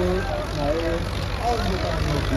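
A diesel tractor engine running steadily close by, a low, even rumble, with men's voices calling over it.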